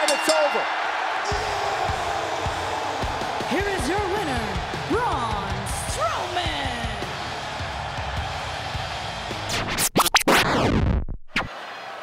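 Music and arena noise with a man's loud shouts in the middle. About ten seconds in, a loud whoosh sweeps down in pitch and the sound then drops away.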